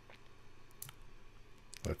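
A few faint, sharp clicks from the computer being operated, spread through the two seconds, then a man's voice starts a word near the end.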